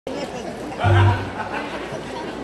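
Audience chatter in a large tent between songs, with a short low steady tone from the stage about a second in.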